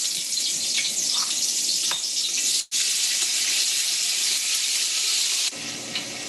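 Chopped raw corn, onion, bell pepper and tomato sizzling steadily as the mixture is scraped from a bowl into smoking-hot oil in a heavy aluminum pot. The sizzle breaks off for an instant about two and a half seconds in and eases near the end.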